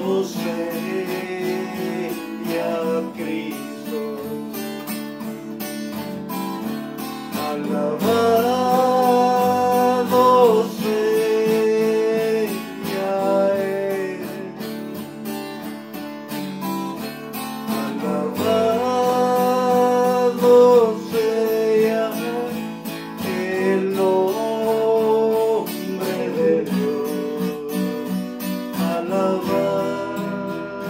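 Acoustic guitar strummed in a steady accompaniment, with a man singing in phrases over it, loudest about a third of the way in and again about two-thirds in.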